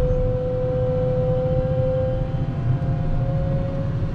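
Wheel loader running, heard from its cab: a low engine rumble under a steady high whine that drifts slightly in pitch.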